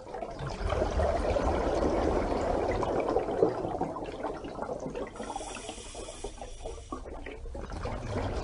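Steady sound of running water, a continuous wash with no distinct events.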